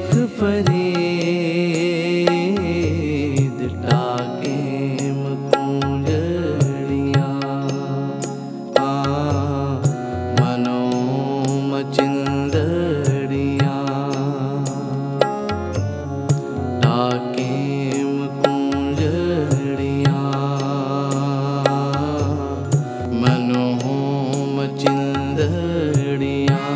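Sikh Gurbani kirtan music: harmoniums holding a sustained melody over a steady tabla rhythm.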